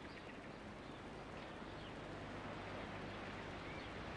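Faint outdoor background ambience: a low steady hum under an even hiss, growing slightly louder, with no distinct event.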